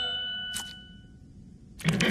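A bell-like ding from the cartoon's soundtrack rings out and fades away over about a second and a half. A short swish comes about half a second in.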